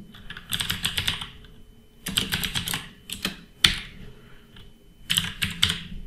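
Computer keyboard typing in three short, quick bursts of keystrokes, with a single louder key press between the second and third bursts.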